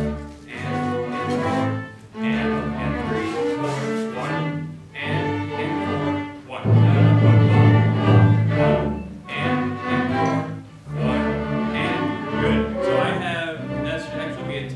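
Ensemble rehearsing under a conductor, playing held chords in phrases with short breaks, swelling to its loudest about seven to eight and a half seconds in.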